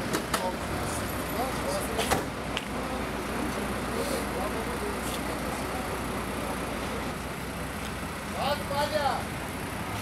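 Steady low rumble of a vehicle engine idling, under people talking, with two sharp clicks in the first few seconds.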